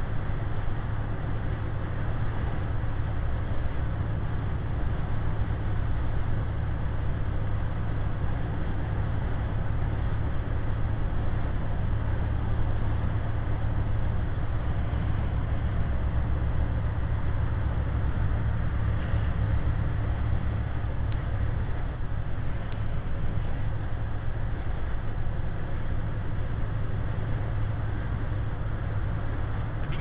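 Steady low drone of a semi-truck's diesel engine with tyre and road noise, heard from inside the cab at highway speed.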